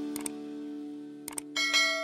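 Subscribe-button animation sound effects: a mouse click, another click about a second later, then a bright bell ding that rings on near the end, over a held chord from the intro music.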